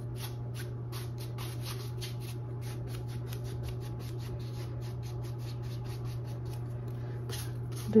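Bristles of a large filbert brush scratching against stretched canvas in quick, short flicking strokes, several a second, over a steady low hum.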